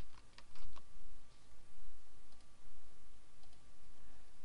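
Typing on a computer keyboard: a quick run of keystrokes in the first second, then a few scattered taps as a password is entered.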